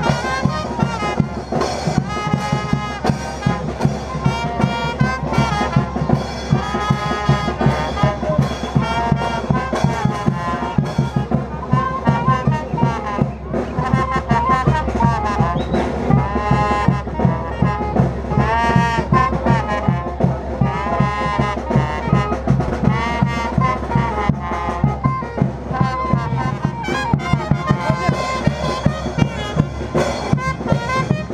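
Live brass band playing a lively dance tune over a steady bass-drum beat.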